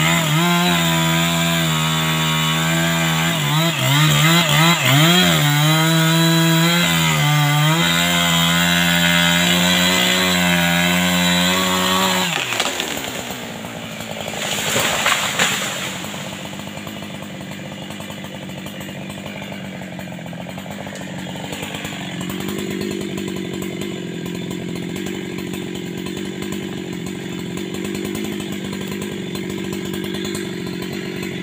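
Husqvarna two-stroke chainsaw running at high revs, cutting through a tree trunk, its pitch dipping and rising as the chain bogs in the cut. About twelve seconds in it drops to idle, a noisy crash of the tree coming down through the foliage follows a couple of seconds later, and then the saw idles steadily.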